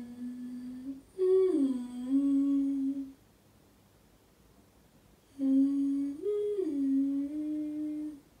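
A woman humming a slow tune with her mouth closed, in three short phrases with pauses between them: a brief held note, then a phrase that steps down, then one that rises and falls back.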